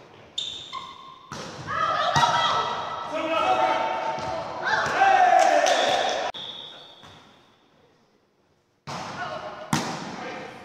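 Volleyball rally in a reverberant gym: players' voices calling out, with sharp smacks of the ball being played, one about two seconds in, one as a forearm pass at about six seconds, and one as a set near the end.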